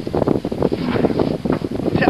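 Wind buffeting the microphone, a loud, uneven rushing and crackling.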